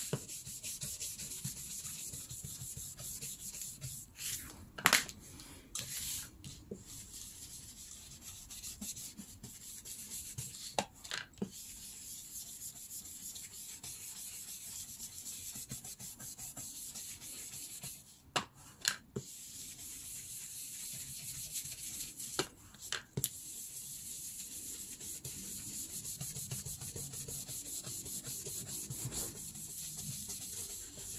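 Ink blending brush scrubbing Distress ink onto the edges of paper, a steady dry rubbing, with a few sharp knocks now and then.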